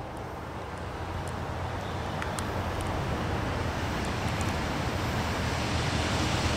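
Approaching diesel freight locomotives, EMD SD70ACe and GE C44-9W units, running with a steady low engine rumble that grows slowly louder as they draw nearer.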